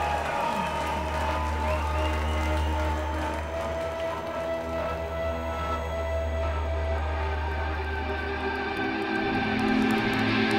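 Ambient interlude between songs at a live metal show: a steady deep bass drone with several held tones above it, under faint crowd noise. The deep drone stops about nine seconds in.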